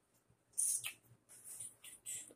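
Short, high-pitched rustles of bag packaging being handled: a burst about half a second in and a few fainter ones near the end.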